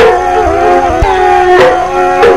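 Punjabi dhadi folk music: a held, gliding melody line over sharp dhadd drum strokes, about two a second.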